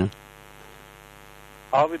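Steady electrical mains hum, a low buzz with a ladder of even overtones, filling a pause in the talk. A voice stops just after the start and another starts again near the end.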